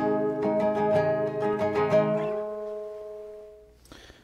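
Nylon-string classical guitar with a capo, fingerpicked: a quick run of plucked notes over a held chord, about five a second, then the last chord rings on and fades away over the final second and a half.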